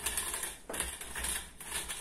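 Elastic meat netting sliding off a wire netting tube as a stuffed pork loin is pushed through it: a rapid, irregular clicking and scraping in two bursts, with a short break a little past half a second in.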